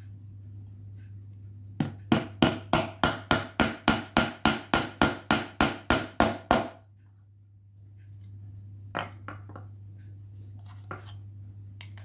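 Small hammer tapping a steel pin into a 3D-printed plastic piece resting on a wooden block: a quick, even run of about seventeen blows, some three or four a second, starting about two seconds in and lasting about five seconds. Later a few light clicks of plastic parts being handled, over a steady low hum.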